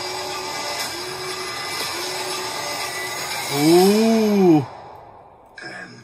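Film trailer soundtrack: a dense, hissing wash of sound design with a low, deep tone that swells up and back down in pitch for about a second, a little before the whole wash cuts off suddenly.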